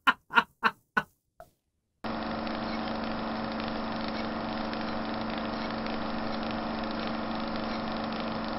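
A person laughing in short bursts that die away within the first second or so. Then, about two seconds in, a steady, even droning hum begins and runs unchanged until just before the end, where it stops with a click.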